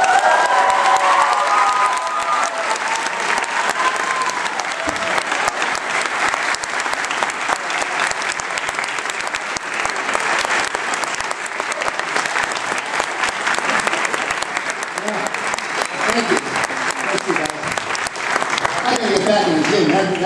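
Audience applause in an auditorium. A few cheers and whoops come in the first couple of seconds, and the clapping thins out near the end.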